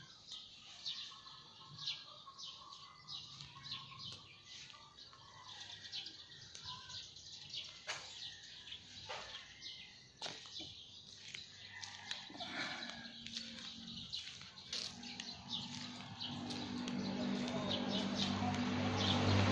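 Birds chirping faintly, many short calls one after another. In the last couple of seconds a low steady hum grows louder.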